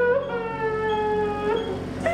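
A long crying wail, held for about a second and falling slightly in pitch.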